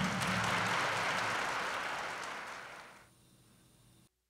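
Audience applauding, fading away over about three seconds to near silence.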